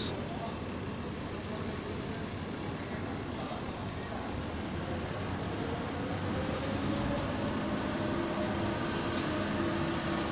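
Steady mechanical hum and background noise, with faint steady tones coming in about halfway through and getting a little louder toward the end.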